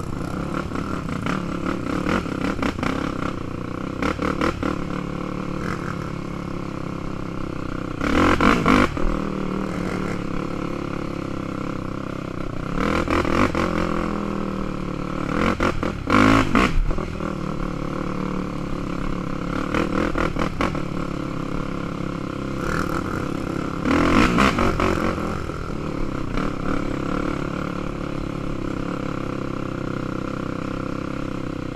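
Sport ATV engine running as the quad is ridden along a dirt trail, rising louder on the throttle four times, at about 8, 13, 16 and 24 seconds in.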